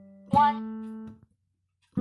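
Piano played one note at a time with the left hand, ascending the D major scale at a slow tempo: one note struck, held about a second and then released, silence, and the next higher note struck at the end.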